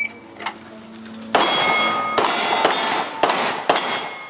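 Glock 17 Gen4 9mm pistol firing five shots at AR500 steel plates over about two and a half seconds, starting about a second and a half in, each shot followed by the ring of a struck plate.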